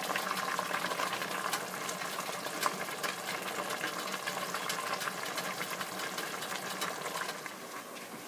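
Pot of water and potatoes boiling on the stove: a steady bubbling with many small pops.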